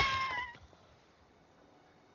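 Wounded baby dragon's high cry, held and then breaking off about half a second in. It is a cry of distress from an animal with a bleeding wing.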